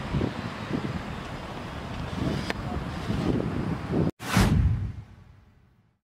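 Outdoor street ambience with wind buffeting the microphone. About four seconds in, after a brief cut, a whoosh swells and then fades away to silence.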